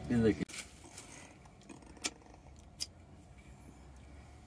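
A short spoken word with laughter that cuts off abruptly about half a second in, then quiet room tone with two short, faint clicks about two and three seconds in.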